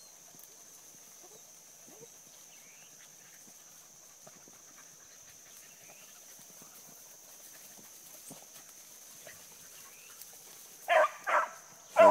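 A rabbit hound bays twice in short chops about a second before the end, opening on the rabbit's trail, after several seconds of near-quiet brush.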